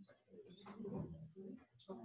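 Faint, indistinct talking, too quiet for words to be made out.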